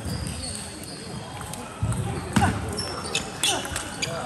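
Table tennis ball clicking back and forth off rackets and the table in a rally, echoing in a large sports hall. The clicks start about two seconds in, the loudest near the middle.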